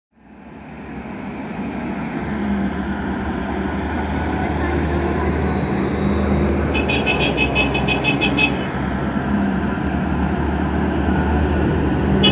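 Armoured military vehicles driving past in a convoy, their engines droning steadily and growing louder over the first few seconds. About seven seconds in, a rapid high-pitched beeping pulses for under two seconds.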